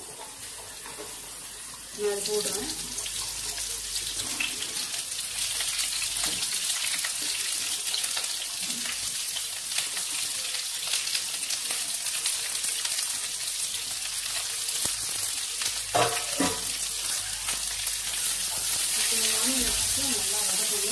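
Chopped onion frying in hot oil in a pan with garlic, green chillies and curry leaves: a steady sizzle full of fine crackles that jumps up suddenly about two seconds in, as the onion goes into the oil.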